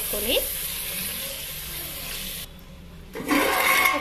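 Chicken and potato masala sizzling in a clay pot on a gas burner, a steady hiss. It drops away briefly a little after the middle and returns louder near the end.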